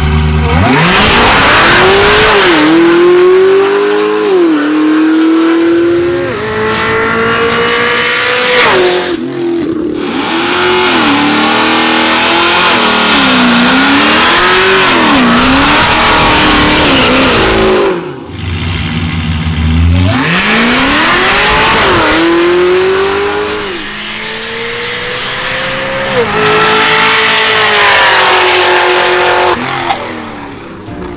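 Supercharged LSA V8 of a heavily modified Cadillac CTS-V at full-throttle drag-strip acceleration, pitch climbing through each gear and dropping back at every upshift. Heard over several edited runs, two of them starting from a low rumble at the line before the launch, with abrupt cuts about a third and about two-thirds of the way through.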